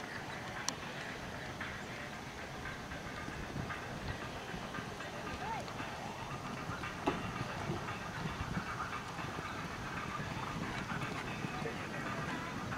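Outdoor show-jumping arena ambience: indistinct distant voices over a steady background rumble, with the muffled hoofbeats of a horse cantering on sand footing. Two sharp clicks stand out, about a second in and about seven seconds in.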